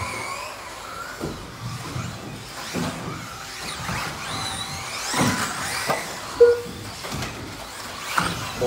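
Electric motors of 4WD modified-class RC buggies whining, the pitch rising and falling as the cars accelerate and brake around the track, with a few short knocks.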